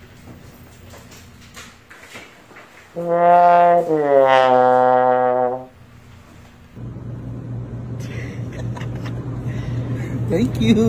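Comedy brass sound effect, a descending 'wah-wah' sting: two loud low notes about three seconds in, the second lower and held for under two seconds before sagging slightly and stopping.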